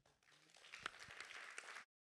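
Audience applauding: a dense patter of hand claps that builds over the first half second, then cuts off abruptly near the end.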